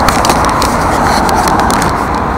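Steady rush of road traffic: passing cars, mostly tyre and engine noise.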